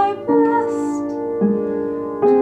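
A woman singing long held notes over upright piano accompaniment; the melody moves to a new note twice.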